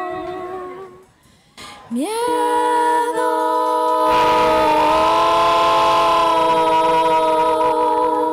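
Three women's voices singing close harmony with no words: a held chord fades out, and after a short pause the voices slide up together into a long sustained chord. A hiss-like wash joins underneath about four seconds in.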